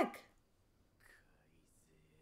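A woman's spoken exclamation trailing off at the very start, then faint, broken voices at low level from about a second in.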